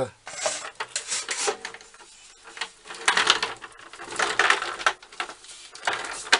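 A shallow metal tray sliding and clattering under a wooden stool's seat, in repeated scrapes and sharp clicks.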